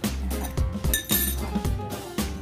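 A metal fork clinks once against a glass bowl about a second in, a short bright ring, over background music with a steady beat.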